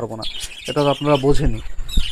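A colony of budgerigars chattering and chirping in the background, under a man's speech.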